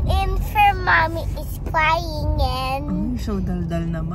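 A young girl singing in a sing-song voice, with a car's steady low rumble underneath.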